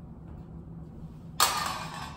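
A small hard object hits the hardwood floor with a sudden clatter about a second and a half in and skids briefly to a stop.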